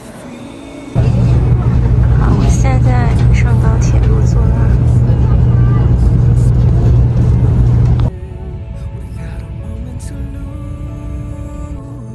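Loud, steady low rumble of a Taiwan High Speed Rail 700T train moving along the platform, starting abruptly about a second in and cutting off sharply at about eight seconds. Soft background music follows.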